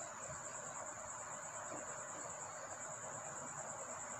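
Crickets trilling steadily: a constant high-pitched, finely pulsing chirr with no break, heard faintly under room hiss.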